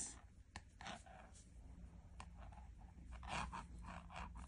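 Faint scratching and small clicks of a Tunisian crochet hook working through yarn, over a low steady hum.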